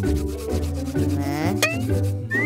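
Hands rubbing together briskly, a fast run of dry rasping strokes, over light background music.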